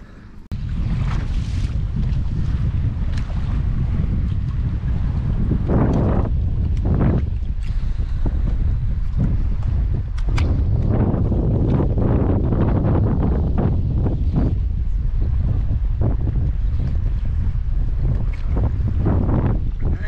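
Wind buffeting the microphone on a moving boat: a loud, steady low rumble with gusty surges, starting about half a second in.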